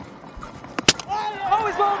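A single sharp crack of a cricket ball hitting the stumps, about a second in, as the batter is bowled.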